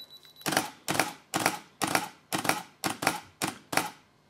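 Canon EOS 5D Mark II shutter and mirror clacking through a rapid seven-frame exposure bracket, about two shots a second, starting about half a second in. A thin steady beep stops just as the first shot fires.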